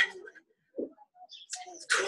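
A man breathing hard from exertion after push-ups: a sharp, breathy exhale at the start and another near the end, with faint short sounds between.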